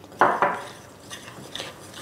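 A metal spoon stirring milk into flour and dry yeast mix in a glass bowl: two short louder scrapes near the start, then quieter stirring.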